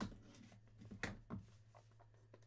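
Light taps and scrapes of a cardboard trading-card box being handled and opened: a sharp tap at the start, then two more about a second in.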